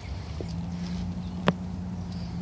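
Footsteps on pavement, then one sharp click about one and a half seconds in, over a steady low hum.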